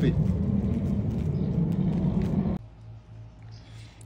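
Steady low rumbling background noise that cuts off abruptly about two and a half seconds in, leaving a faint steady low hum.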